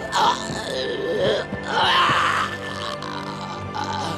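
A man groaning in pain in short strained bursts, loudest about two seconds in, over steady background film-score music.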